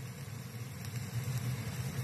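Bacon-wrapped chicken and peppers sizzling faintly on a hot skillet: a steady, even hiss over a low hum.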